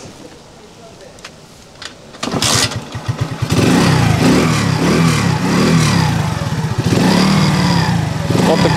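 Moped's horizontal single-cylinder Alpha-type four-stroke engine cranked over for about a second, catching about three and a half seconds in. It then runs with its revs rising and falling. This is a cold start without the choke.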